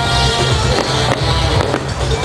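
Loud music with a pulsing bass, mixed with the bangs and crackles of fireworks bursting.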